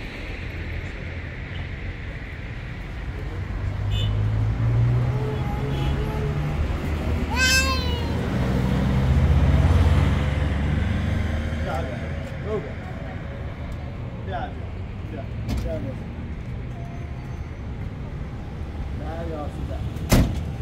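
A motor vehicle's engine rumble grows louder to a peak about nine to ten seconds in, then eases, with voices in the background. A short, high, arching cry sounds about seven and a half seconds in.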